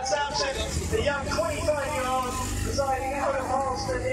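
Spectators' voices talking close by, over a steady low rumble.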